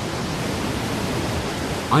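Geyser erupting: a steady rushing hiss of water and steam jetting from the ground.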